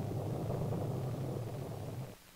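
Polaris A3 solid-fuel missile motor in flight, a steady low rumble.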